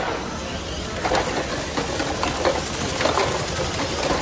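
Small electric motors of a VEX competition robot whirring as it drives and runs its block intake, with a few sharp knocks of plastic blocks, over a steady background din.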